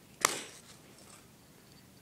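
A single sharp click as a small fishing hook is worked onto a split ring on a bottle-cap lure, handled close to the microphone.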